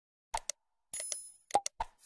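Animated end-screen sound effects for clicking the like, bell and share buttons: two quick pops, a short ringing ding about a second in, then three more quick pops.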